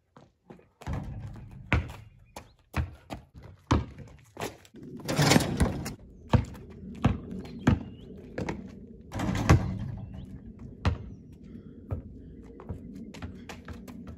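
A basketball bouncing on an outdoor concrete court: a run of separate, irregularly spaced thuds from dribbling, with two longer, rougher sounds about five and nine seconds in.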